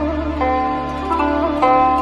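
Background music: a slow plucked-string melody, zither-like, with new notes about every half second and some of them wavering in pitch, over a steady low held tone.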